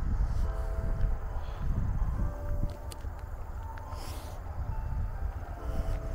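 Low, uneven rumble of wind buffeting the microphone outdoors. Faint held musical chords come and go over it.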